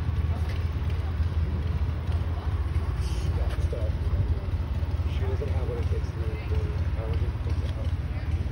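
Indistinct voices, too distant to make out, over a steady low rumble.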